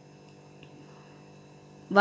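A low, steady electrical hum in a quiet room; a woman's voice starts speaking right at the end.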